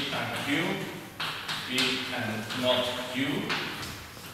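Chalk writing on a blackboard, with several sharp taps as letters and symbols are struck onto the board. A man's voice speaks between the taps.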